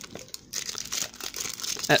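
Foil wrapper of a Topps Match Attax trading-card packet crinkling and crackling as hands handle it and pull it open, starting about half a second in.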